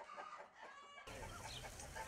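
Chickens clucking faintly through the first second, then a sudden change to a steady low outdoor rumble.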